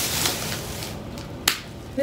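A brief rush of noise, then a single sharp click about a second and a half in: a bedroom door being pushed shut, its latch catching.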